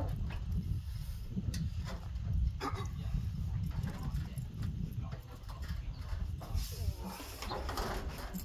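Scattered knocks and creaks from an IBC tote's steel cage as it is tipped and lowered down a trailer ramp by hand, with a man's strained grunts, over a steady wind rumble on the microphone.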